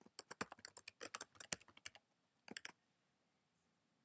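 Computer keyboard being typed on: a quick run of light keystrokes for about two seconds, then a couple more keystrokes about two and a half seconds in.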